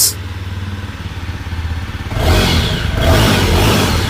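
Jawa 42 Bobber's single-cylinder engine idling, then revved up about halfway through and held at higher revs.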